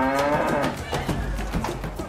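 A zebu cow mooing once, a single call that rises slightly in pitch and fades about half a second in, followed by the noise of a busy cattle market with scattered knocks.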